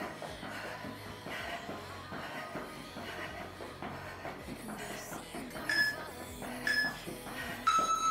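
Background workout music at a low level, with an interval timer's countdown beeps near the end: two short high beeps a second apart, then a lower, slightly longer beep as the interval runs out.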